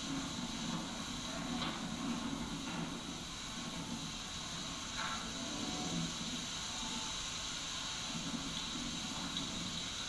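Wind blowing steadily, a constant rushing noise with no distinct events.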